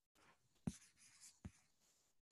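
Near silence with faint rustling and two soft taps, the first under a second in and the second near the end.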